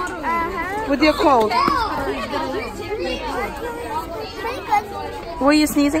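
Children chattering, several voices talking at once and overlapping.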